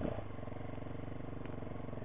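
Big Boy TSR 250's single-cylinder engine running at a steady, even speed as the motorcycle moves off slowly.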